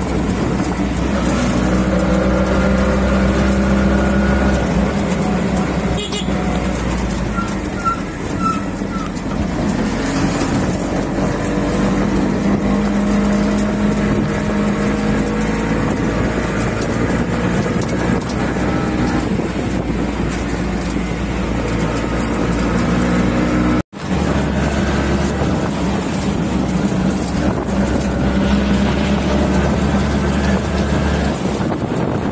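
Auto-rickshaw engine running steadily as it drives along a road, with road and wind noise throughout. A few short high beeps come about eight seconds in, and the sound cuts out for an instant later on.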